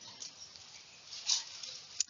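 Faint, soft scratching and tapping of a stylus writing on a tablet, over a low room hiss.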